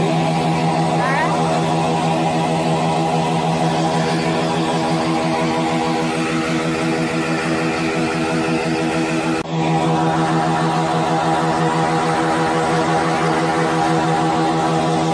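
Small motorcycle engine revved and held at high revs in a steady drone, with a brief break about nine and a half seconds in.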